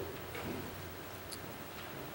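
Quiet room with a low steady hum, a soft knock about a third of a second in and a faint high click a little past the middle: small handling noises at the pulpit.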